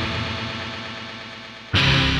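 Post-hardcore band recording: a loud, distorted electric guitar chord rings out and slowly fades, then the band comes back in with another loud hit near the end.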